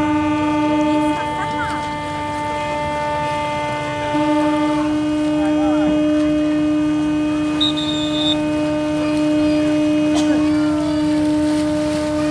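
Several ship and boat horns sounding together in long, steady, overlapping blasts at different pitches. The lowest horn drops out about a second in and comes back around four seconds, the higher ones stop one by one, and the last cut off at the very end.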